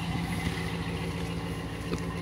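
Engine idling steadily: a low, even hum with a regular low pulse.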